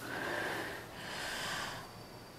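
A woman breathing heavily through her open mouth: two audible breaths of about a second each.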